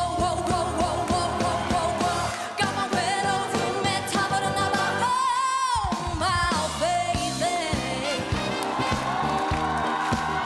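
A woman singing a pop ballad live with band backing. About five seconds in the backing's low end drops out briefly while she holds a long high note with vibrato, then the band comes back in.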